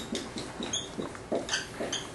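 Dry-erase marker squeaking and scratching on a whiteboard in short strokes as a word is written, with several brief high squeaks.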